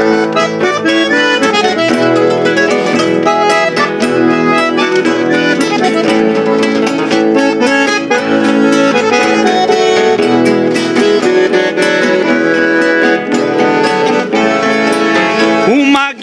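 Bandoneon and three nylon-string acoustic guitars playing an instrumental passage between the sung verses of a gaúcho folk song, with the bandoneon's held reed notes over strummed and plucked guitar chords.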